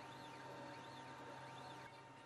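Faint whine of the AtomStack Kraft laser engraver's gantry motors, rising and falling in pitch as the laser head moves back and forth while engraving, over a low steady hum.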